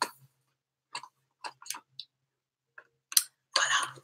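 A stiff cardboard figurine stand being handled: a few short clicks and crinkles of card, then a longer rustle near the end.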